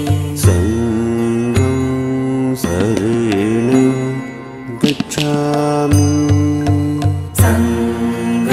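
Buddhist devotional chant sung to music: a single voice holds and bends long melodic notes over sustained low drone and bass notes, with occasional bright struck accents.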